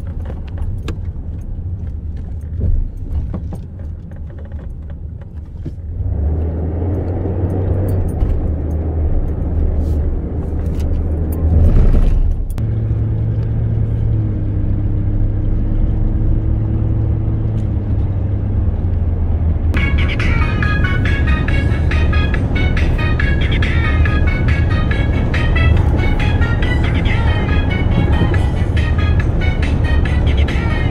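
Car cabin noise while driving: a steady low rumble of engine and tyres that grows louder about six seconds in as the car gets up to speed on the highway. Music comes in about two-thirds of the way through and plays over the road noise.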